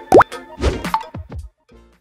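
Cartoon-style pop sound effects over the tail of a short music sting: a loud rising bloop just after the start, then a few quicker pops that fade out by about a second and a half, followed by a brief silence.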